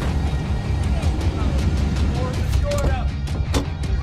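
Steady low rumble of a fire engine's motor under dramatic background music, with a few sharp cracks about two and a half and three and a half seconds in.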